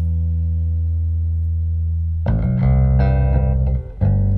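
Solo bass guitar playing a piece built on ringing harmonics: a low chord sustains for about two seconds, then a quick run of plucked, bell-like notes follows.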